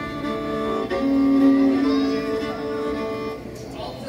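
Live folk band music: a few quick notes, then long held notes from about a second in that end the tune and stop about three and a half seconds in.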